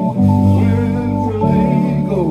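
Live band playing at loud, steady volume with guitar to the fore, the chord changing twice.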